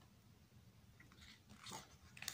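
Faint rustle of a glossy photobook page being turned by hand, loudest about a second and a half in, over near-silent room tone.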